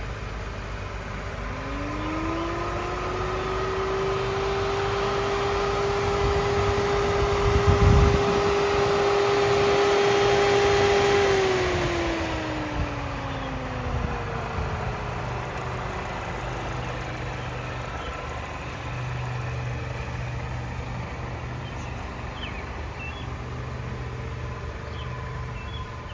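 An engine or motor revs up about a second in, holds a steady pitch for about ten seconds while a rush of noise swells, then winds down, over a steady low hum.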